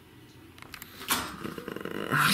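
A person's low, rattling vocal growl, made as a sound for a puppet character, starting about a second in after a quiet moment.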